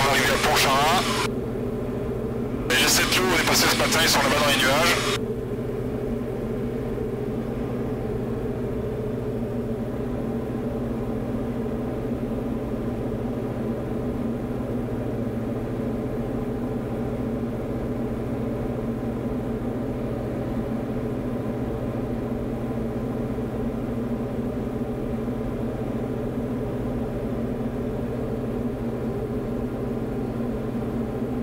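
Diamond DA40's piston engine and propeller droning steadily in cruise, heard from the cabin, with two short louder bursts of sound in the first five seconds.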